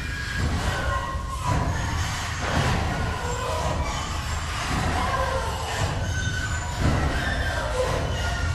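Dark ambient noise: a steady low rumble with short, scattered metallic squeals and screeches at many different pitches, not the band playing.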